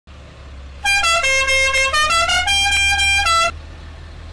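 A musical horn on a box truck playing a short tune of about eight notes, two of them held, then cutting off, over the low rumble of the truck's engine.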